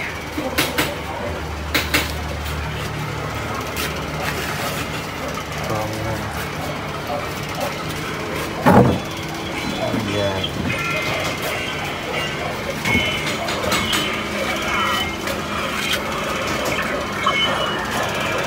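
Workshop background: a steady low hum, indistinct voices and scattered small clicks of parts being handled, with one louder knock about nine seconds in.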